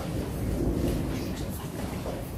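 Steady low rumble of a large hall's background noise, with faint distant voices in it.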